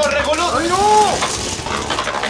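Beyblade Burst spinning tops whirring and scraping across a clear plastic stadium floor as they battle: a steady, loud hissing rattle.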